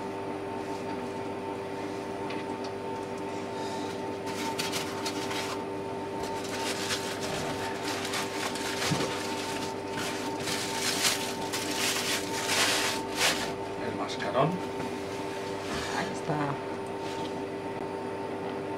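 Stiff plastic packaging rustling and crinkling in irregular bursts as a clear blister tray is handled in a styrofoam box, over a steady two-tone hum. The rustling is loudest through the middle and dies away after about thirteen seconds.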